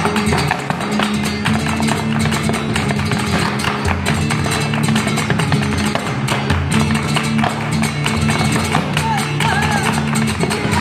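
Live flamenco: a flamenco guitar playing, with sharp hand-clapping (palmas) and the dancer's stamping footwork on a wooden dance board, and a woman's voice singing near the end.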